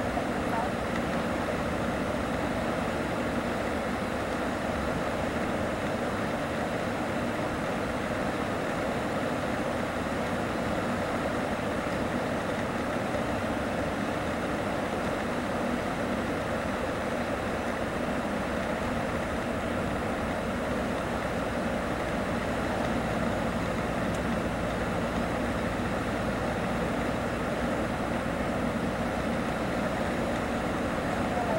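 Steady running noise heard inside a Mercedes-Benz O-500RSDD double-decker coach cruising at highway speed: engine and tyre drone carried through the cabin.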